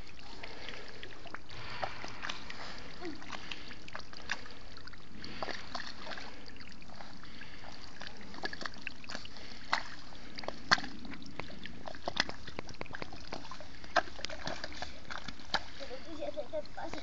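Rubber boots wading through shallow water over soft mud: steady sloshing with scattered small splashes and sucking steps, a few sharper splashes in the second half.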